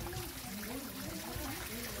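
Water trickling steadily from a small rock waterfall into a garden fish pond.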